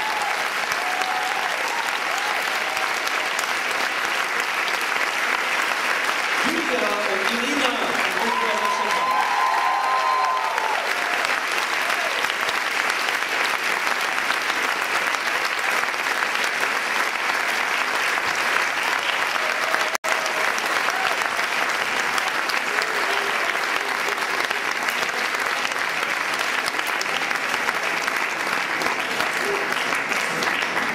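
Crowd applause, steady and sustained, from a large audience and choir clapping, with voices heard over it roughly seven to ten seconds in.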